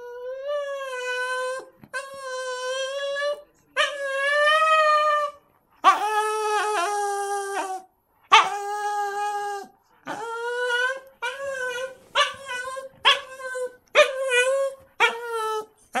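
Shih Tzu whining in a series of about eleven long, pitched cries: drawn out at first, then shorter and closer together. This is the crying he does while carrying a toy around, looking for a place to bury it.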